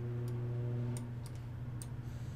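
Several sharp computer mouse clicks, one about a second in with two more close after it and another near the end, over a steady low electrical hum.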